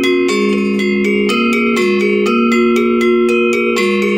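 Balinese gender wayang, a bronze-keyed metallophone over bamboo resonators, played with two mallets: several struck notes a second, each ringing on into the next, a lower line and a higher line sounding together.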